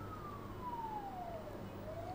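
Faint emergency-vehicle siren in a slow wail: a single tone gliding steadily downward, bottoming out about three-quarters of the way through and then starting to rise again, over a low steady hum.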